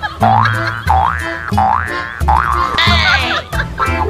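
Comical background music with a bouncy bass line and beat. Three quick rising sliding tones come in the first two seconds, and a short fizzy swirl about three seconds in.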